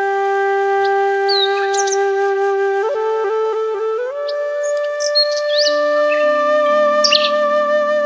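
Background music: a flute holds one long note, then steps up to a higher held note about four seconds in, and a low sustained drone joins later. Short high bird chirps sound over it.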